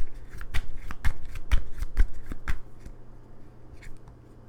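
A deck of tarot cards being shuffled by hand: a quick run of sharp card flicks, about three or four a second, that stops about two and a half seconds in, leaving only a few faint clicks.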